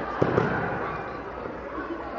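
Two sharp knocks in quick succession a quarter of a second in, over young people's voices talking in the background.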